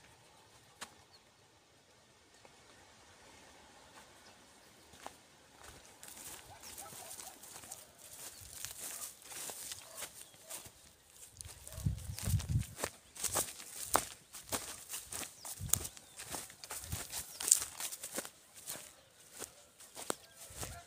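Footsteps through dry grass: irregular crunching and rustling that starts faint and grows louder from about six seconds in, with a low bump on the microphone partway through.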